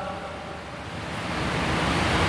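A steady hiss of background noise with no speech, growing a little louder near the end.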